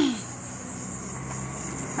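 Car engine running steadily on the street: a low, even hum.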